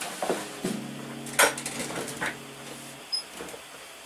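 Acoustic guitar being set down: a few knocks of wood, the loudest about a second and a half in, while its open strings ring a steady low chord that stops suddenly about three seconds in.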